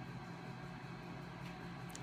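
Quiet room tone: a steady low hum with a faint hiss and no distinct events.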